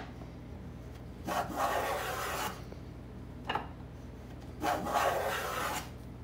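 Wooden moulding plane cutting shavings along a board's chamfered edge while shaping an ovolo: two long strokes of dry rasping, each a little over a second, with a short sharp click between them.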